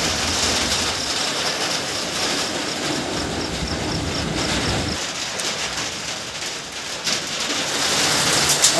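A vehicle on the move in rain: a steady hiss of engine, road and rain noise, with a low rumble that drops away about five seconds in.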